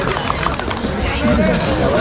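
Crowd chatter, several voices at once, with scattered hand clapping.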